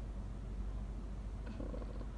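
Car engine idling, a steady low rumble heard inside the cabin.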